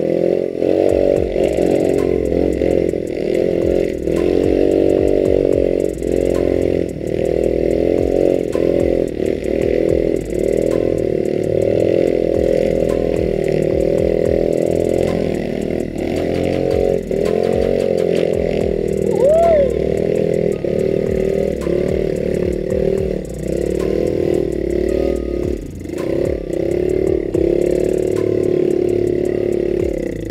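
Small single-cylinder engine of an automatic-scooter-based trail bike running hard under load on a steep dirt trail, its revs dipping and picking up again every few seconds as the throttle is worked. The bike clatters over rocks and ruts throughout.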